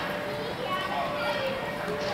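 Background voices and chatter from people around the arena, softer than the close calls either side, over a faint steady hum.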